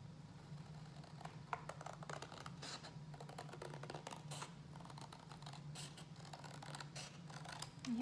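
Scissors cutting through a sheet of watercolor paper: a faint, irregular string of short snips and crinkles.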